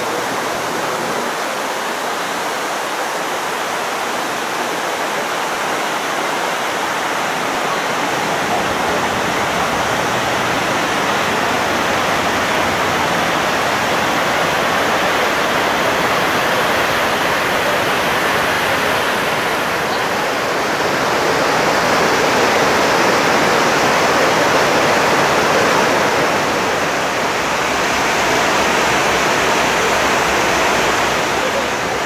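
Water falling down the wall of a 9/11 Memorial pool waterfall, a steady rush that grows a little louder and fuller after the first several seconds.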